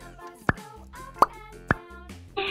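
Background music with three short, sharp plops that rise in pitch, the first about half a second in and the other two close together near the end.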